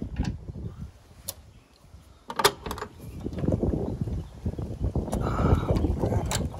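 Small metal clicks and rattling as a steel ring-type lynch pin is worked by hand into a pin hole in a Land Rover's rear bracket: a few sharp clicks in the first half, then steady rattling and scraping from about halfway.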